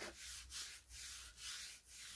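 Oily cloth rubbed back and forth along a wooden karlakattai club, faint, in even strokes about two to three a second.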